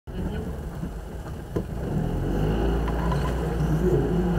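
A Citroën 2CV's small air-cooled flat-twin engine runs steadily at low speed, heard from inside the car's cabin, with voices over it.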